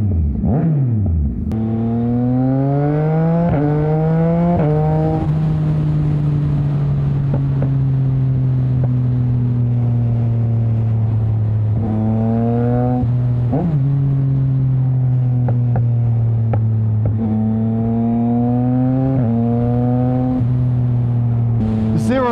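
Race-tuned 2021 Yamaha MT-09's three-cylinder engine through a Mivv X-M5 exhaust with no catalytic converter and no silencer, very loud: a couple of quick revs at the start, then accelerating through the gears, the pitch climbing and dropping at each upshift, with stretches of steady cruising in between.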